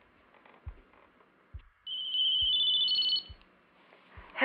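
A mobile phone's electronic ringtone sounds about halfway through for roughly a second and a half: a high steady tone with a few short stepped notes above it. Underneath, a soft low thud repeats about once a second, like a slow heartbeat.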